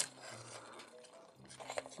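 Faint handling of a plastic transforming robot toy as its panels are unlatched and swung out, with a few small plastic clicks in the second half.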